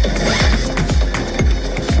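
Electronic dance music with a steady, fast kick-drum beat.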